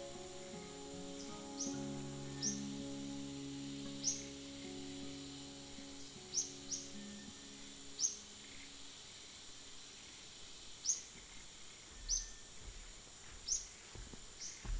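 Short, sharp downward bird chirps repeating every second or two over a steady high insect drone, while soft background music with long held notes fades out in the first half.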